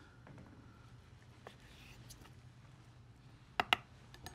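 A chef's knife cutting raw ahi tuna into cubes on a wooden cutting board: quiet slicing, then two sharp taps of the blade on the board in quick succession near the end.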